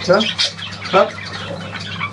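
Budgerigars chattering and squawking, with short sharp squawks about half a second and a second in.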